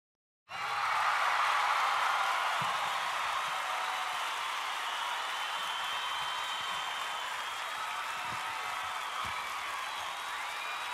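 DJI Phantom quadcopter's propellers running: a steady whirring hiss with a faint, slightly wavering whine above it, starting about half a second in after a brief silence.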